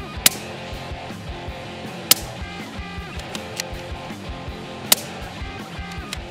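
Three sharp shots from a Tikka T1X UPR .17 HMR bolt-action rimfire rifle: the first just after the start, the second about two seconds later and the third near the end, over background guitar music.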